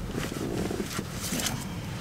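Steady low rumble inside a truck cab, with light rustling and a few small clicks of something being handled.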